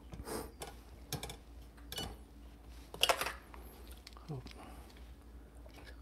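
A few light clicks and clinks of a glass being set in place and handled on an espresso machine's drip tray. The clicks are spaced out over the first three seconds, with the sharpest about three seconds in.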